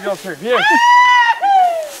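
A person's long, high-pitched shout: the pitch rises about half a second in and holds for nearly a second, then a shorter note slides downward. Low talk sits under it at the start.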